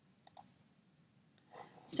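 A computer mouse button clicked twice in quick succession, faint and sharp.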